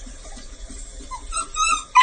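German shorthaired pointer puppy whining in short, high cries that start about a second in, the loudest right at the end. Under the cries there is faint, quick, rhythmic lapping of water from a toilet bowl.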